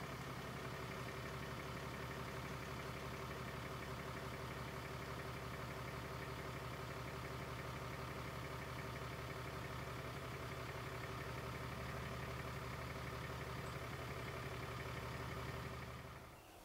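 Truck engine idling steadily, fading out near the end.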